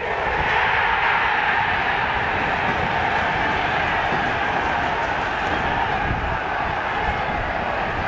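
Football stadium crowd cheering a goal: a steady wash of cheering that swells right at the start and holds.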